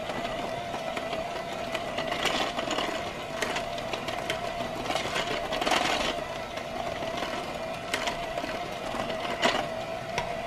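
Electric hand mixer running steadily on its lowest speed with a constant hum, its beaters churning crumbly cookie dough in a glass bowl. A few brief ticks come from the beaters knocking against the bowl.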